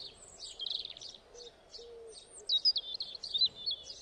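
Songbirds chirping: a run of short, high, quick calls, busiest in the second half.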